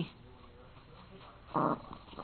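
Mostly quiet, then one short, rough growl from a small Papillon dog about one and a half seconds in.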